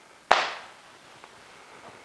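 A single sharp clap about a third of a second in, fading quickly.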